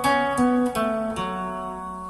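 Frame-body silent guitar playing a short single-note fill over an A chord: four plucked notes in quick succession, the last one left to ring and fade.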